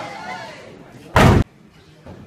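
Loaded barbell with bumper plates dropped from overhead, landing on the wooden lifting platform with one heavy slam a little over a second in. Voices are heard briefly at the start.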